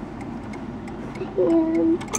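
Triple-chime mantle clock movement ticking steadily, with a short vocal sound near the end.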